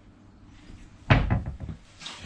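A cupboard door being shut: one loud knock about a second in, followed by a few lighter clicks and rattles as it settles.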